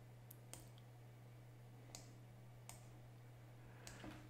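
About five faint computer mouse clicks, spread unevenly, over near silence with a low steady hum.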